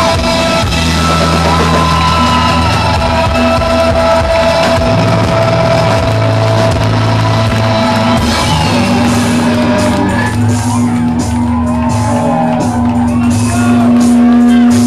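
Electronic rock band playing live and loud through a club PA: long held synth notes over a steady bass line, with cymbal-like hits coming in about eight seconds in and shouting over the music.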